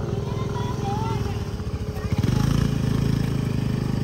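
Small motor scooter engine running with an even low pulsing, getting louder about two seconds in as it is throttled up.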